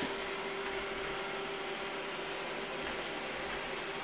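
iRobot Roomba robot vacuum running: a steady hum of its vacuum motor and brushes with a faint steady tone. It is stuck nudging about in a corner it cannot find its way out of.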